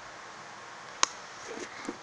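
Smartphone being fumbled and dropped: one sharp click about a second in, followed by a few faint rustling handling sounds over a steady low hiss.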